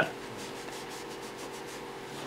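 Paper towel wet with lacquer thinner being rubbed over a vinyl cutting mat: a soft, steady scrubbing.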